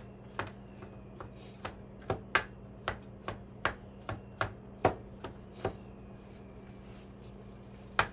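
Kitchen knife chopping mushroom stems on a cutting board: a steady series of sharp knocks, about two to three a second, that stop a little past halfway.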